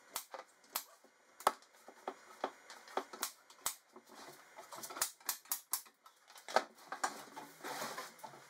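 Pneumatic stapler firing staples one after another into a plywood cabinet back, as short sharp shots at irregular gaps of about half a second. Near the end there is a patch of rustling handling noise.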